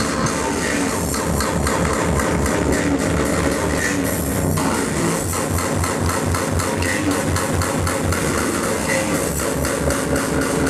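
Speedcore music played loud by a DJ over a club sound system, driven by a fast, steady kick drum.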